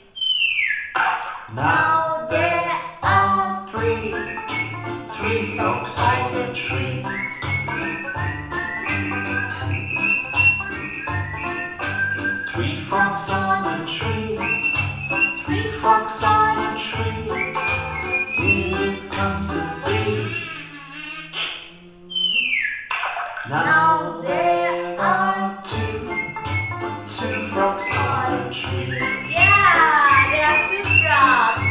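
Children's counting song about frogs on a tree and a bee, sung over a steady beat with backing instruments. A falling whistle-like glide comes at the start and again after a short break about 22 seconds in.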